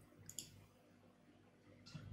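Near silence: room tone, broken by two faint computer mouse clicks in quick succession a little under half a second in.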